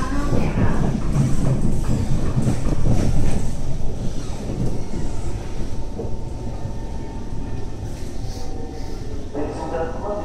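Cabin noise inside an SMRT Kawasaki C151 metro car: a low steady rumble with voices mixed in, busiest in the first few seconds. Near the end a steady pitched sound begins.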